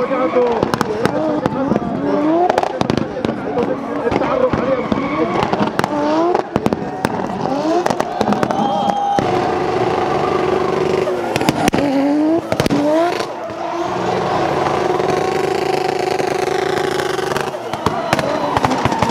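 The turbocharged Toyota 1JZ straight-six in a BMW E36 drift car, revving hard in repeated rising sweeps while the car drifts, with many sharp cracks and pops. In two longer stretches in the second half the engine is held at steady high revs.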